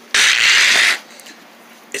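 A loud rustling hiss just under a second long, starting and stopping abruptly: fabric and plush toys handled right against the microphone.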